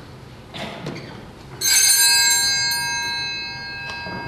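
A small altar bell rung once, its several clear tones sounding together and fading slowly, after a couple of faint knocks.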